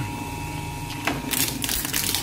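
Twin-shaft shredder running with a steady hum, then a plastic tub of glitter slime cracking and crunching between its rotating blades, with a series of sharp cracks in the last second.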